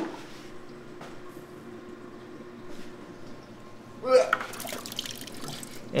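Water trickling and dripping through airline tubing into a plastic bucket as a drip-acclimation siphon is started. A short louder sound comes about four seconds in.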